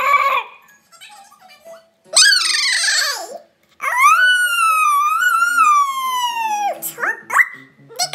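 Cartoon character's voice imitating animals, played over computer speakers. About two seconds in comes a short, rough call falling in pitch, like a whinny. Then comes a long 'awoooo' wolf howl of about three seconds that wavers and falls away at the end.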